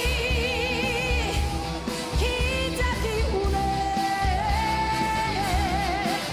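A woman singing an upbeat Korean pop song live with a backing band over a steady beat. Her long held notes waver with vibrato near the start and again near the end.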